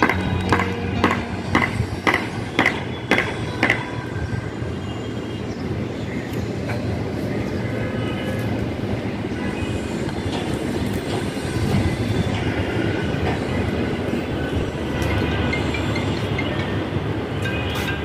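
Steady rumble of a passing vehicle, with regular clicks about twice a second during the first four seconds.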